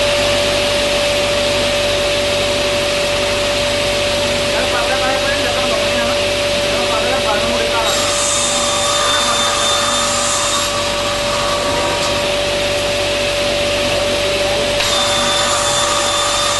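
Sliding-table panel saw running steadily, its motor and blade giving a loud, even hum with one strong tone. Twice, about eight seconds in and again near the end, a higher whine joins it for a few seconds as the blade cuts through a wood-based panel.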